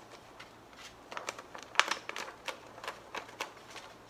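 Pink paper being refolded and creased by hand to set the folds of a pop-up card: a run of short crackles and rustles, the sharpest about two seconds in.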